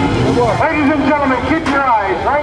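Mostly voices talking, with a vehicle engine running underneath.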